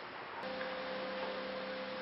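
Quiet room tone: a short click about half a second in, then a steady hum with a few even pitches.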